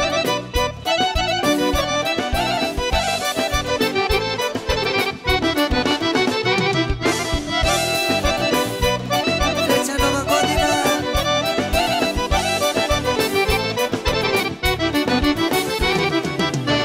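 Live Balkan folk band playing an instrumental passage led by two chromatic button accordions over a steady drum beat.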